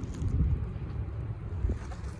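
Wind buffeting the microphone: an uneven low rumble that surges in gusts.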